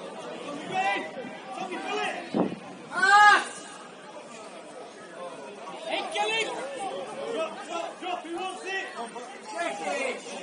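Voices shouting and calling across a football pitch during play, with one loud drawn-out shout about three seconds in and more calls near the middle. A single short thud comes just before the loud shout.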